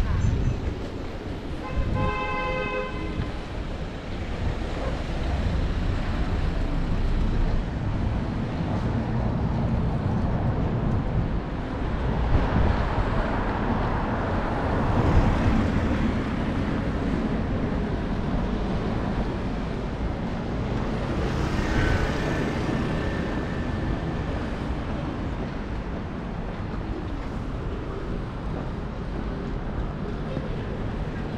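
City street traffic: cars and vans running by. A vehicle horn sounds once for about a second near the start, and a louder vehicle passes around the middle.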